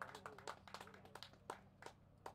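Faint, scattered hand claps from a small audience after a song, thinning out toward the end.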